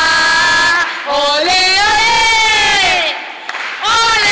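A woman's voice through a microphone leading a protest chant, with a crowd chanting along: long, drawn-out sung phrases, a short break about a second in and a brief pause near the end before the next phrase starts.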